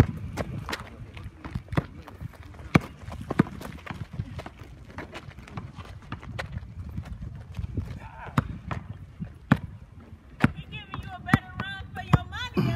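A basketball bounced on an asphalt court during one-on-one play: sharp, irregular smacks of the ball, the loudest a few seconds in and again about three-quarters through, mixed with the players' footsteps.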